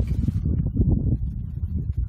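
Low rumble of wind buffeting the microphone.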